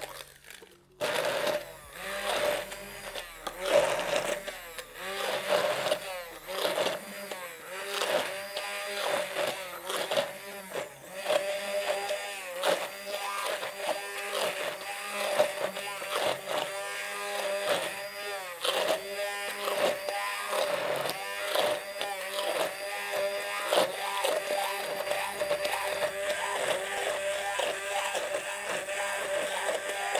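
Handheld stick blender running in a tall beaker, puréeing a thick green paste with walnuts. It stops briefly just under a second in, then runs on, its motor pitch dipping and picking up again over and over as the blade works through the mix.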